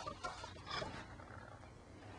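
Faint rustling and handling of paper, a softcover workbook being opened to its first page, over a low room hum.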